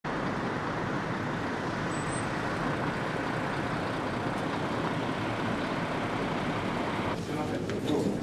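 Steady hum of city road traffic. About seven seconds in it cuts to a quieter indoor ambience with a few faint clicks.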